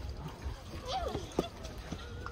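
Passersby talking nearby with footsteps clicking on the pavement; one sharp click about one and a half seconds in.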